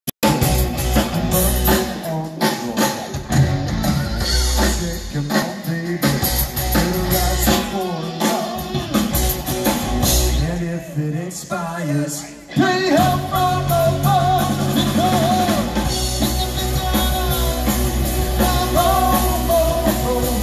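Live rock band playing: electric guitars, bass guitar and drum kit with a lead singer. The sound thins out briefly around eleven seconds in, then the full band comes back in strongly just before thirteen seconds, with the sung melody over it.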